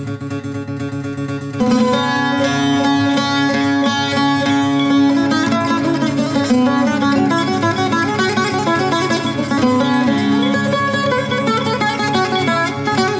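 Instrumental introduction of a rebetiko song played on plucked strings: a bouzouki melody over guitar and baglamas. It starts softer and fills out louder about a second and a half in.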